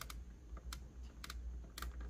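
Light taps on a calibrator's touchscreen as a list is scrolled: a handful of small clicks about half a second apart, some in quick pairs, over a low steady hum.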